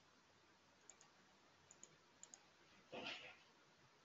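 Near silence with a few faint, small computer-mouse clicks and a brief soft noise about three seconds in.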